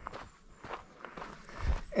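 Soft footsteps of a trail runner on a dirt mountain path, with a low bump near the end.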